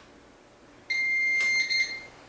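CyberPower 1500VA UPS giving a single high-pitched electronic beep, about a second long, starting about a second in, as it powers on after its power button is pressed. A click breaks into the beep partway through.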